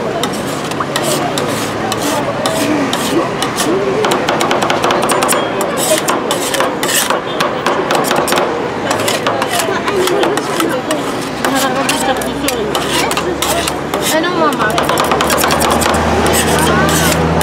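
Two metal spatulas chopping and scraping Oreo pieces into a liquid ice cream base on a frozen steel cold-plate pan. The sound is a rapid, irregular run of metal clicks and scrapes.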